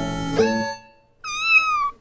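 A held musical note that shifts and fades in the first part, then a single high-pitched kitten meow, rising and then falling, lasting under a second near the end.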